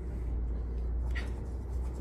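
Small makeup brush scratching and dabbing against a handheld paint palette, with a couple of faint, short scratches, over a steady low hum.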